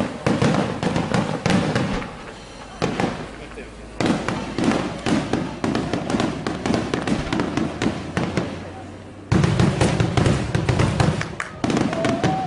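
Aerial fireworks shells bursting in quick succession: a dense barrage of bangs and crackling, with a short lull about two seconds in and another just before a final heavy run of bangs.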